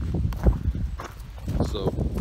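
Footsteps on gravel: a few irregular steps with dull low thumps, one a little louder about half a second in.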